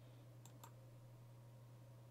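Near silence: a low steady hum, with two faint computer mouse clicks close together about half a second in.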